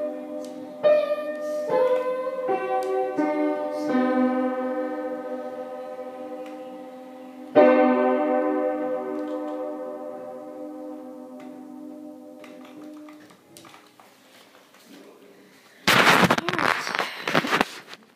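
Upright piano: the close of an improvised piece, a few chords in the first four seconds, then a loud final chord about seven seconds in that is left to ring and fade away. Near the end, a loud burst of rustling and knocking from the camera being picked up and handled.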